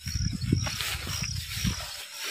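Rustling of a big armful of freshly cut grass and leafy undergrowth as it is carried along, over a low, uneven rumble, with a faint steady insect drone.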